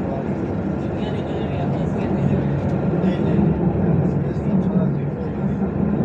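Tram running, heard from inside the car: a steady low rumble that grows a little louder about two seconds in, with people's voices in the background.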